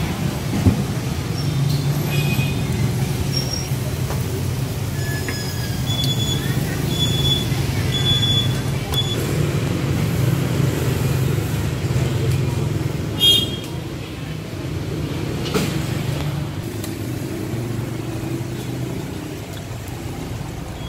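Steady low rumble of street traffic, with background voices and one short, sharp knock about thirteen seconds in.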